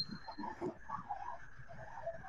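A faint, indistinct human voice, muffled and thin, over online video-call audio. A brief high tone sounds at the very start.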